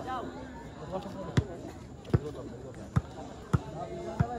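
A volleyball being struck four times, sharp thuds a little under a second apart, over crowd chatter.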